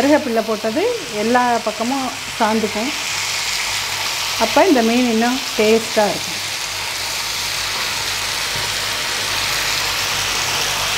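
Masala-coated murrel (viraal) fish pieces sizzling steadily on a hot griddle as a spatula turns them. A voice speaks over it in the first few seconds and again briefly about five seconds in.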